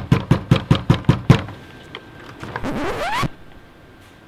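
A fist knocking rapidly on a door, about eight knocks in just over a second, then a short rising squeak as the door swings open, cut off sharply.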